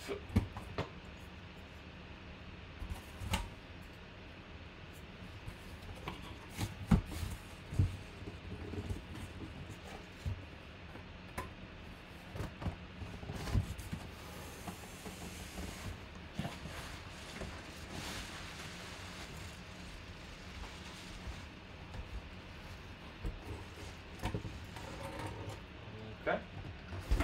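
Cardboard shipping box being handled and opened by hand: scattered knocks, scrapes and rubs of the corrugated cardboard flaps, with irregular pauses between them.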